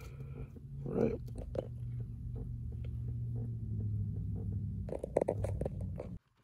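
A low, steady hum inside a car cabin, with a brief murmur about a second in and a few light clicks and handling rustles near the end.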